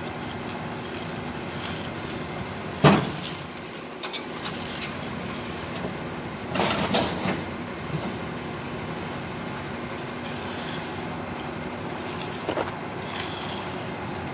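A truck engine running steadily, with a sharp knock about three seconds in, a short clatter around seven seconds and a lighter one near the end.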